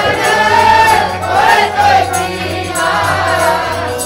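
Sikh kirtan: several voices singing a shabad together over harmonium accompaniment, with a steady low drone underneath.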